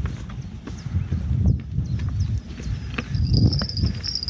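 Footsteps and handling on loose rocks close to the microphone: irregular knocks, scrapes and clicks as stones shift underfoot and the rod is moved.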